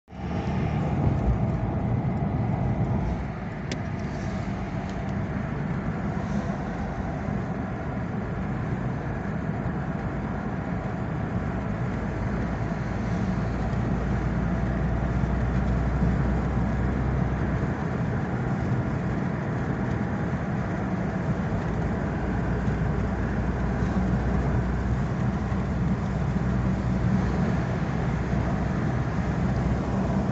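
Steady road noise of a car driving on a highway, heard from inside the cabin: a low rumble of tyres and engine.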